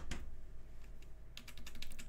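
Computer keyboard key, the escape key, tapped rapidly in a fast run of clicks starting about a second and a half in, to interrupt the U-Boot autoboot as the board reboots. One sharp click at the very start.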